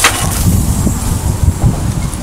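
Low rumble of wind buffeting the camera microphone, with two short knocks a little after a second in.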